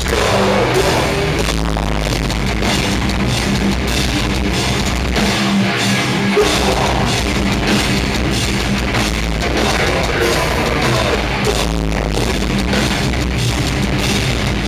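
Metalcore band playing live: distorted electric guitars, bass and a drum kit, loud and dense without a break, heard from within the crowd.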